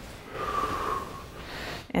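One audible breath from a person, lasting about a second.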